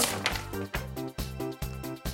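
Background music: a light tune of short notes in quick succession, about four a second.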